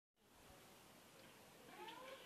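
Faint background hiss, then near the end a rising squeak as a black steel door starts to swing open on its hinges.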